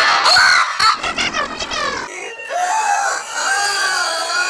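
Loud cartoon-character screaming: pitched cries that bend up and down, with a quick stuttering run about a second in, then wavering cries after a brief dip.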